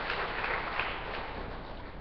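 An audience applauding, the clapping dying away over the second half.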